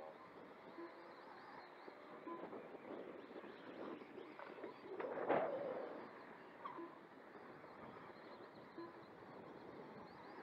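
Electric Losi Promoto-MX RC motorcycles running around the dirt oval. One passes close about halfway in, the loudest moment, swelling and fading within about a second. Faint short notes recur every second or two.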